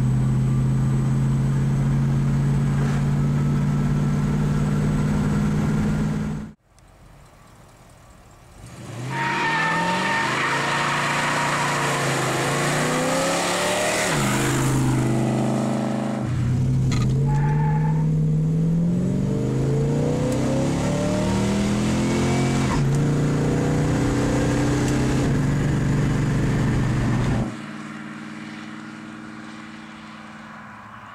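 1968 Dodge Dart GTS's 340 V8 cruising with a steady drone heard inside the cabin. After a cut, the same car is heard accelerating hard, its pitch rising and breaking several times as the automatic shifts up firmly. Near the end it drops away and fades as the car drives off.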